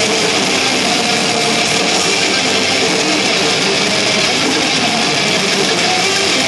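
A blackened death metal band playing live at full loudness: heavily distorted electric guitars, bass and drums in a dense, unbroken wall of sound, heard from the crowd.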